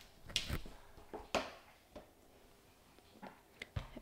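A USB-C cable plug being handled and pushed into a laptop's side port: a few faint clicks and knocks, the sharpest about a second and a half in.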